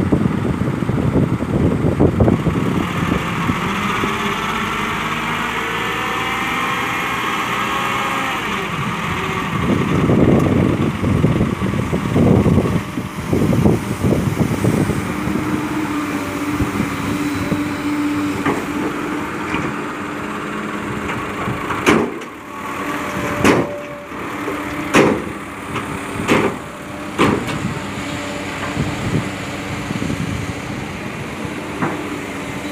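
Excavator dropping a bucket of soil and rock into a light Mitsubishi dump truck's bed over running diesel engines, with faint rising and falling hydraulic whines in the first several seconds. In the second half the truck's engine holds a steady hum as its hydraulic hoist tips the bed to unload, and about six sharp knocks come near the end.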